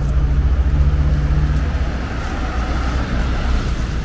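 A motor vehicle running close by: a loud, steady low engine rumble, with road noise that swells in the middle and then eases off.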